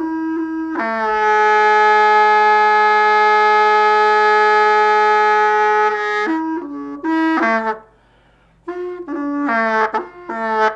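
Background music: a solo reed-like wind instrument playing a slow melody, with one long held note of about five seconds, then short stepping notes broken by a brief pause.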